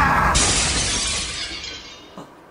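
A woman's shout cut off by a sudden shattering-glass sound effect a third of a second in, which fades away over the next second and a half.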